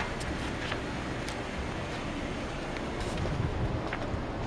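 Steady background noise with wind rumbling on the camera microphone, and a few faint clicks scattered through it.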